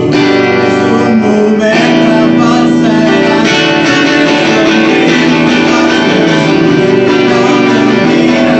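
Live band music led by electric guitars played loud through amplifiers, a dense wash of sustained, ringing chords that shift about two seconds in.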